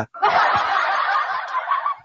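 A man's long, breathy snicker of about two seconds that stops suddenly at the end.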